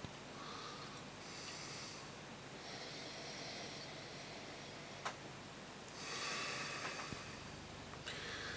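Soft breaths drawn in and let out through the nose over a glass of ale as it is smelled and sipped, in several slow stretches, with a single small click about five seconds in.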